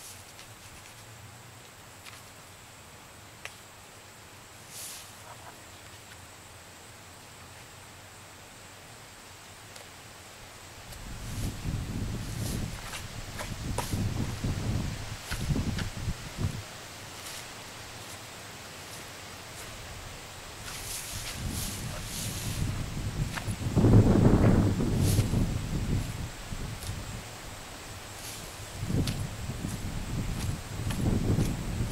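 Wind buffeting an outdoor microphone: irregular low rumbling gusts that begin about a third of the way in, come and go, and are strongest near the end.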